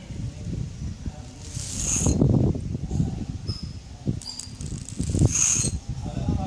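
Broken bangle pieces clicking and scraping against each other and the tiled floor as they are handled and picked up, with irregular dull knocks and two brief high clinks in the middle.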